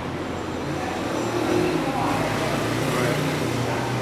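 Street traffic: a car engine running under a steady rumble of road noise that grows louder about a second and a half in, with faint voices.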